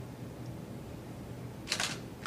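Digital SLR camera's shutter firing once near the end, a quick double click of the mirror and shutter as the photograph is taken.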